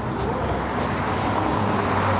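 Road traffic passing on the street: a steady rush of vehicle noise with a low hum, growing a little louder in the second half.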